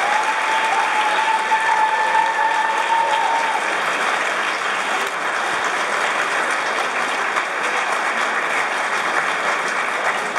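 Audience applause, steady and dense, in a large hall. One long high held note sounds over it for the first three and a half seconds.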